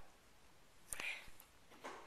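Mostly near silence, broken about a second in by a faint mouth click and a short breathy whisper close to the microphone.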